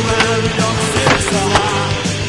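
Skateboard on a smooth concrete floor, wheels rolling, with a few sharp clacks of the board, the loudest about a second in, heard over steady music.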